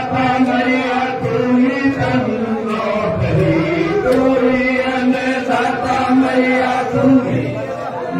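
Devotional chanting by voices in unison, long notes held on nearly one pitch with a brief dip in pitch about three seconds in.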